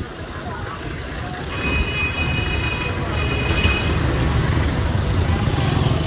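Passenger jeepney's diesel engine running close by, its low rumble swelling from about a second and a half in, amid street traffic noise. A high, steady pitched tone sounds twice over the first half.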